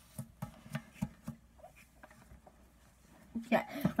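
A few faint clicks and taps of small objects being handled in the first second or so, then near quiet; a child says "yeah" near the end.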